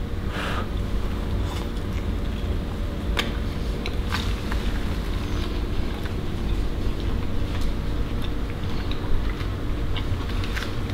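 Steady low hum and rumble of indoor background noise, with a few faint clicks.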